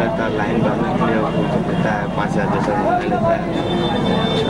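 Indistinct conversation between men, muffled as picked up by a hidden camera, over a steady background noise. A thin high whine comes in near the end.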